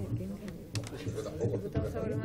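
Indistinct chatter of several people around a meeting table, with scattered light clicks of typing on a laptop keyboard.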